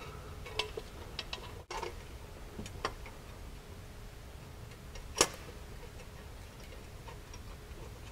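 A few light metallic clicks and taps as a clamp is slid along the frame tube and lined up with the mounting slot of a metal skid plate, with one sharper click about five seconds in.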